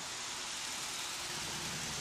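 A car driving close past on a city street: the steady noise of its tyres and engine.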